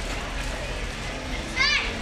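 Schoolchildren's voices in the background, with one child's short high-pitched shout about one and a half seconds in.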